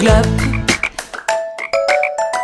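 Cartoon frog croaking sound effects in a children's song. After the bass line drops out, a little under a second in, they come as a quick rhythmic run of short croaks over short plucked notes.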